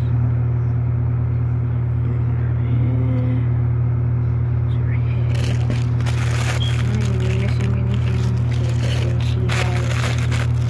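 Clear plastic wrapping crinkling as it is handled, starting about halfway through, over a loud steady low hum.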